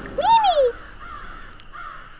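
A single short caw-like call, about half a second long, that rises and then falls in pitch, followed by faint background sound.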